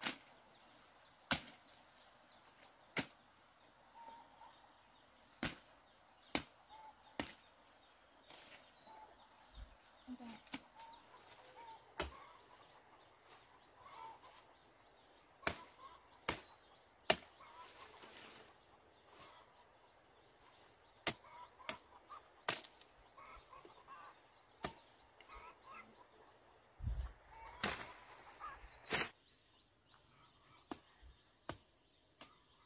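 Machete striking weeds and soil in sharp, irregular chops about every one to two seconds, with a rustle of cut brush near the end.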